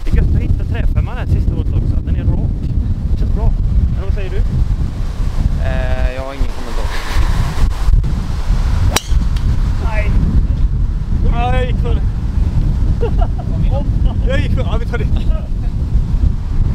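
Wind buffeting the microphone throughout, with a single sharp crack about nine seconds in: a golf driver striking the ball off the tee.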